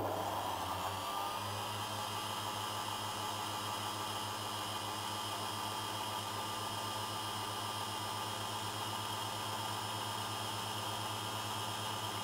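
Small metal lathe motor starting up: a whine rising in pitch over the first second or so, then running at a steady speed with a low hum and an even hiss. The lathe is spinning a model diesel engine piston for final lapping with 800-grit wet paper, which is pressed against it very gently.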